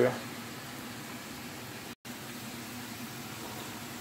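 Sliced potatoes frying in vegetable oil in a pan: a soft, steady sizzle with a low steady hum underneath. The sound breaks off for an instant about halfway.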